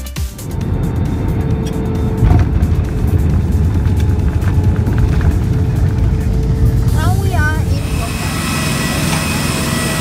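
Cabin noise of an Airbus A320-family airliner landing: a loud, deep, steady rumble of the wheels and engines on the runway that swells about two seconds in. Near the end it gives way to the steady high whine of jet engines running on the apron.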